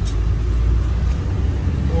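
Cab noise of a 15-foot Ford box truck driving on the highway: a steady low rumble of engine and road.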